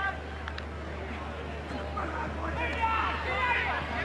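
Sports broadcast ambience: a steady low hum under faint crowd noise, with faint voices talking from about two and a half seconds in.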